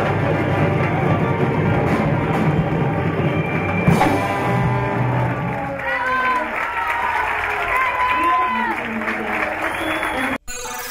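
Symphony orchestra with rock band and percussion playing the closing bars of a piece, with a sharp final accent about four seconds in. From about six seconds the audience cheers and shouts over applause.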